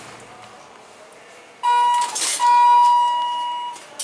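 Elevator lantern chime giving two electronic beeps, a short one and then a longer one about a second and a half long, with a brief rush of noise between them; two tones typically signal a car set to travel down.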